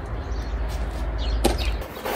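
A single sharp click or knock about one and a half seconds in, over a steady low rumble that stops near the end, with a few faint bird chirps.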